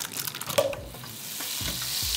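A block of butter sizzling in hot olive oil in a pan as it starts to melt and foam, the sizzle building louder across the two seconds after a few small clicks as it goes in.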